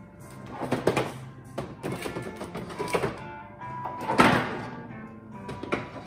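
Hard plastic storage cases sliding into and bumping against a wooden rack's shelves, giving several knocks and short scrapes, the loudest about four seconds in, over background music.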